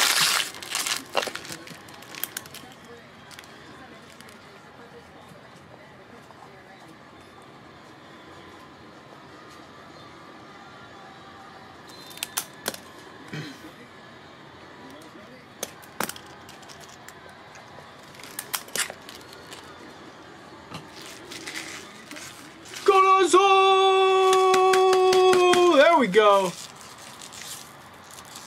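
Light clicks and crinkles of trading cards and pack wrapping being handled, then a loud recorded announcer's call: one drawn-out held note lasting about three seconds that falls in pitch at the end.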